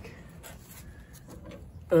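An electric fan's steady hum cuts off as it is switched off, leaving only faint handling and shuffling noise.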